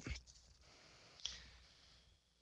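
Near silence with a single faint click about a second in, a computer mouse click.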